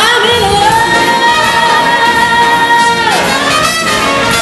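Swing big band playing with a female vocalist, who holds one long high note for about three seconds before it falls away.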